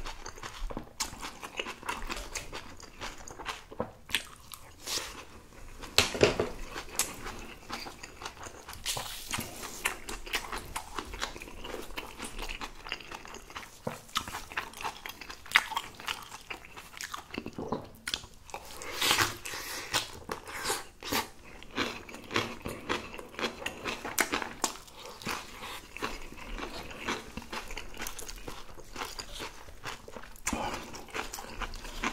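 Chewing and biting of crisp, freshly made napa cabbage kimchi with Spam and rice: a steady run of short crunches and chewing sounds.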